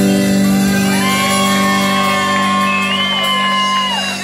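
A live rock-pop band playing, with guitars, drum kit and keyboard over a steady chord. A long held high note begins about a second in and breaks off just before the end.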